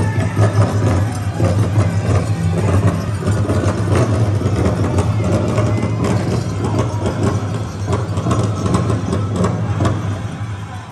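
Powwow drum and singers performing a song for men's traditional dancing, with a steady deep drone under dense, rapid strokes.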